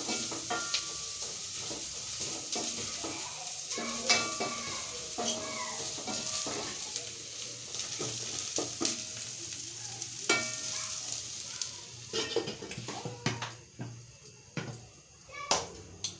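Matumbo (beef tripe) sizzling as it dry-fries in a pot on a gas burner, with a wooden spoon stirring and knocking against the pot. Near the end the sizzle fades and a few separate knocks are heard.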